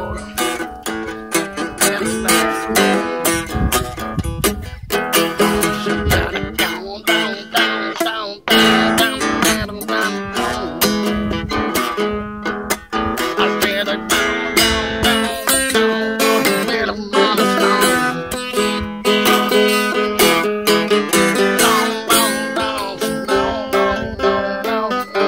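Small acoustic travel guitar played as an instrumental break, steadily strummed and picked in a bluesy rhythm.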